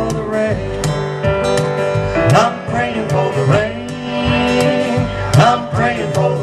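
A live country-bluegrass band playing: acoustic guitar strumming with upright bass and electric piano over a steady beat of about two strikes a second.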